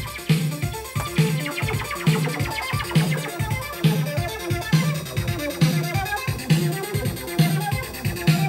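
Vintage 1980s synthesizers playing a sequenced electronic pattern, with a synth arpeggiator running in sync over a repeating low beat that comes a little more than once a second.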